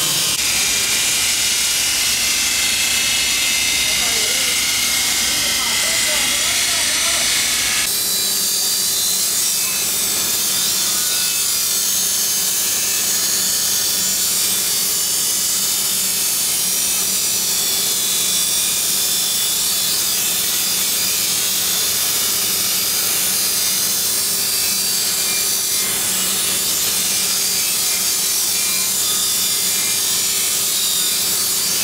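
Steel knife blades being ground on motor-driven grinding wheels: a steady, harsh grinding over the hum of belt-driven workshop machinery. The sound changes abruptly about eight seconds in, then runs on steadily.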